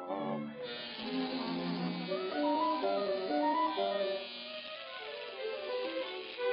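Orchestral cartoon score, with strings carrying a moving melody.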